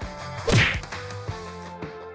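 A single sharp whoosh sound effect about half a second in, used as an on-screen transition, followed by background music with steady bass tones starting a little later.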